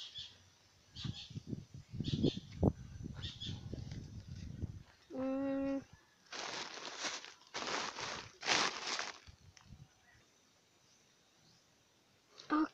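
Camera handling noise: low bumps and knocks as the handheld phone is carried about, a short steady hum from a person's voice about five seconds in, then three bursts of rustling as the camera is set down among woven plastic sacks.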